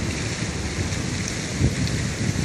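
Wind buffeting the camera's microphone: a steady hiss with uneven low rumbling, over a background of city traffic.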